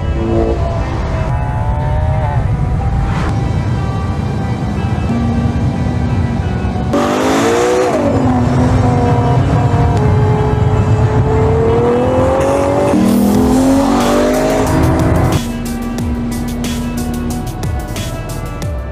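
Ferrari Purosangue's naturally aspirated V12 engine accelerating through the gears, its pitch climbing and then dropping at each upshift several times, loudest in the middle. Background music plays underneath.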